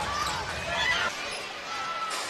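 Basketball game sound on a hardwood court: short sneaker squeaks over arena crowd noise. The low arena rumble drops out about a second in.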